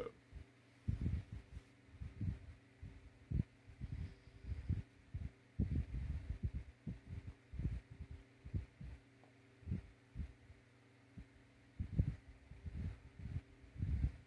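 A man puffing on a cigar: irregular soft, low puffs and pops from his lips and breath, over a steady low electrical hum.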